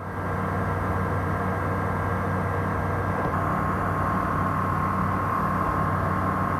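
Light aircraft's engine and propeller droning steadily in the cockpit, with a thin steady whine above the drone.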